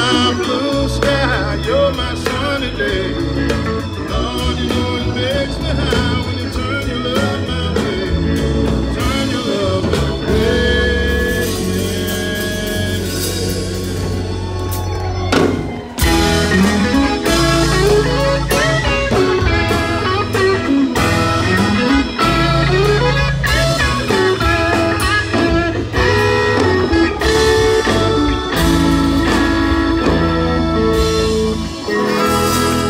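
Live band playing a blues number: drum kit, bass, electric guitar and saxophone. The sound drops briefly just past halfway, then the full band hits back in.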